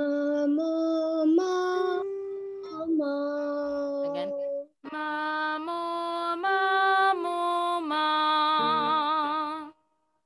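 A woman singing a vocal warm-up exercise: two phrases of held notes that step up and then back down in pitch, the last note sung with vibrato.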